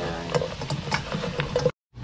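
Chicken wings sizzling in a nonstick frying pan as they are tossed in a fish-sauce glaze, with scattered clicks of metal tongs and a spatula against the pan. The sound cuts off abruptly near the end.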